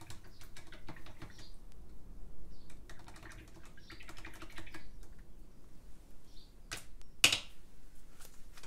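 Irregular light clicks and taps, like typing on a keyboard, with a sharper, louder click about seven seconds in.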